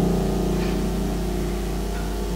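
The final piano chord of the song ringing on and slowly dying away after the voice has stopped, over a steady low hum.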